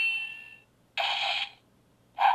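Bandai Legacy Saba toy sword's electronic sword-slash sound effects, set off by its trigger-position attack button and played through the toy's speaker. There are two short slashes about a second apart, and the first carries a fading ringing tone.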